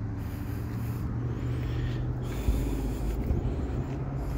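Road traffic passing: a steady low engine hum with tyre noise, and one short knock about two and a half seconds in.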